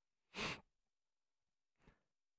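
A breath close to the microphone about half a second in, then a fainter breath near the end; otherwise near silence.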